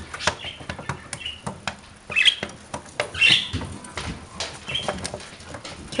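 Pet cockatiels and a budgie moving about on deer antlers: many small clicks and taps from claws and beaks, with short bird chirps about two and three seconds in.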